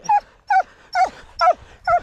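Hunting hound giving five short, high yelps, about two a second, each falling in pitch, excited over a freshly caught hare.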